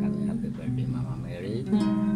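Acoustic guitar music playing, with a voice heard over it.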